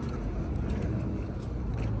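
Steady outdoor street noise with the low rumble of road traffic, and a few faint light clicks from metal paint cans being handled.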